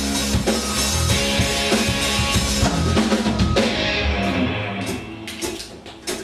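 Live rock band playing, electric guitars, bass guitar and drum kit. The full band sound thins out about three and a half seconds in, leaving a few last drum and guitar hits as the song ends.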